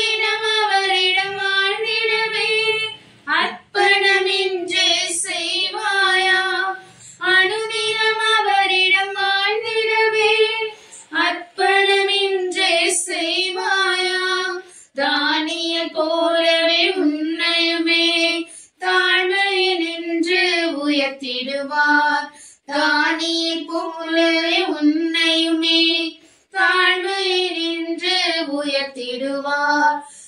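A single high voice singing a Tamil Christian song unaccompanied, with no instruments. It sings in phrases of about four seconds, with short breaks between them.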